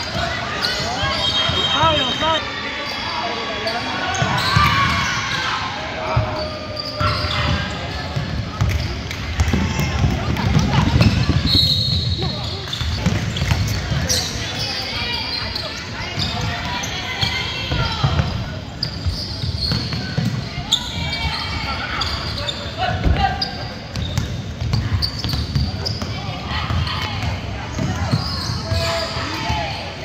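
Basketball game sounds in a large gym: a basketball bouncing on the court again and again, among the voices of spectators and players.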